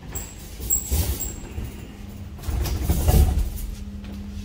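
A sheeted hospital trolley being pushed into a steel lift, its wheels and frame rumbling and knocking loudest past the middle. Three short, high beeps sound in the first second.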